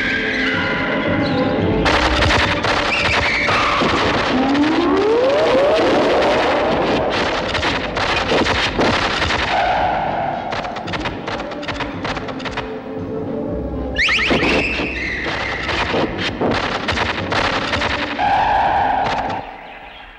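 Experimental soundtrack music, dense with sharp clicks and knocks, with a few rising gliding tones, fading out near the end.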